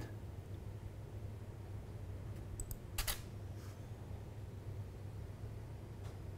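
Two faint clicks, then about three seconds in a louder single clack of a camera shutter firing for a tethered capture, with a faint click after it, over a low steady hum.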